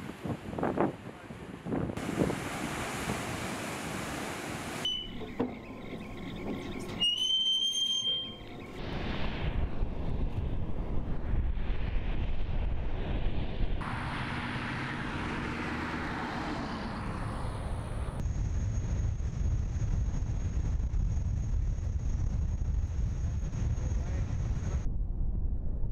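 Waves surging against concrete breakwater blocks. This is followed by a string of abrupt cuts between other outdoor recordings: a brief high whistle-like tone around seven seconds in, then steady wind noise with a low rumble.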